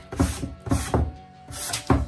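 Sanding pad rubbed by hand over the dry paint of a wooden shelf in about three short strokes, smoothing the paint to a polished finish, with background music underneath.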